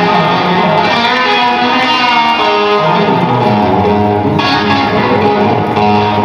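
Electric guitar solo played live at arena volume: a run of sustained, ringing notes that moves down to lower notes in the second half.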